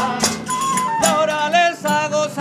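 Murcian aguilando folk song: plucked strings and hand percussion, with a voice starting to sing with a wavering vibrato about a second in.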